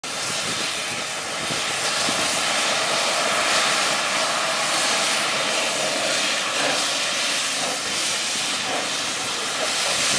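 Steady hiss of steam venting at the front cylinders of a small steam locomotive as it moves slowly forward.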